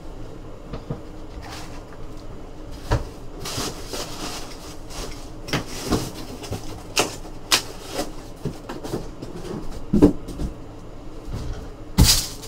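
Cardboard boxes being handled and opened, with scattered knocks and taps and some rustling of packaging. The loudest knocks come about three and ten seconds in.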